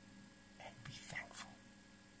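Faint whispering: a few short hushed sounds about halfway through, over a low steady electrical hum.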